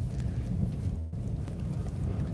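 Low, steady rumble of a car's engine and road noise heard from inside the cabin as the car slows to pull over.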